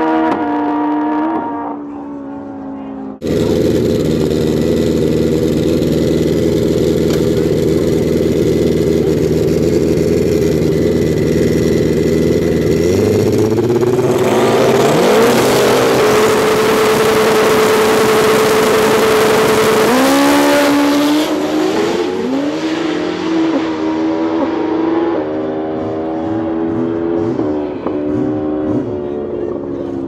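Turbocharged Pro Street drag-racing motorcycles. First a pair running away down the strip with falling pitch; then, after a cut, bikes idling at the starting line, revs brought up near the middle and held high and loud for several seconds. They then launch and pull away through the gears, the engine note climbing in steps at each shift.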